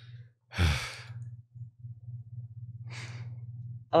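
A person sighing into a close microphone: one long breath out about half a second in, then a fainter breath near the end, over a low steady hum.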